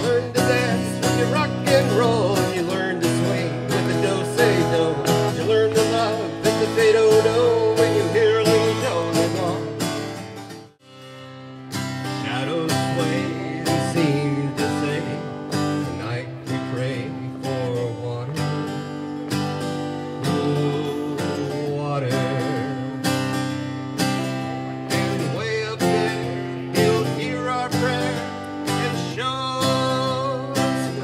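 Acoustic guitar strummed in a steady rhythm. It stops briefly about eleven seconds in, then the strumming starts again.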